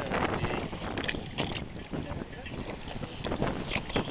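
Wind buffeting the microphone on a boat at sea, a steady low rumble, with faint voices in the background.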